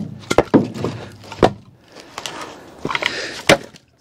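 Split locust firewood knocking together as pieces are pulled off a pickup's bed and stacked. About six sharp wooden knocks, the loudest about a second and a half in and near the end.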